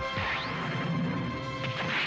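Closing bars of orchestral anime theme music, overlaid by a rising swish sound effect a quarter second in and a loud crash-like sound effect near the end.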